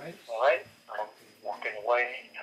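A voice heard over a phone call on speakerphone, thin and tinny with no bass. It is a call sample from the Macaw T1000 wireless earbuds' inline microphone, which has CVC 6.0 noise reduction.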